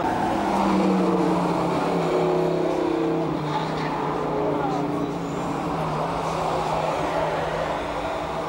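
Several cars' engines running as they lap a race circuit bend, a steady engine drone.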